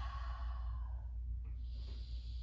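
A woman breathing out audibly in a long exhale as she settles into downward-facing dog. It fades about a second in, and another breath begins near the end.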